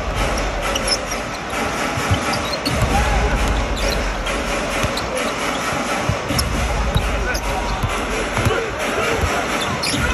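A basketball being dribbled on the hardwood court during live play, with short knocks of the ball heard through the steady din of an arena crowd.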